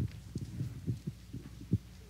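Irregular low thumps and rubbing, about a dozen in two seconds, over a steady low hum: handling and clothing noise on a close microphone as hands rub together at the chest.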